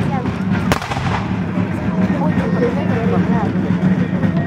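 A single sharp black-powder gunshot about three-quarters of a second in, over the steady talk of a crowd of voices.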